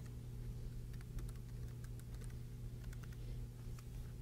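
Faint, irregular keystrokes on a computer keyboard as a password is typed, over a steady low hum.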